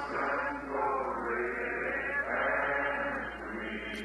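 A congregation singing a hymn together, many voices blended into a soft, smeared chorus in an old, muffled church recording.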